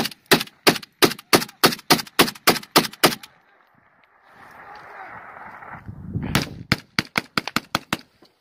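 Gunfire very close by: a steady run of about eleven rapid shots over three seconds, then after a pause a quicker run of shots near the end, as weapons open up for fire support.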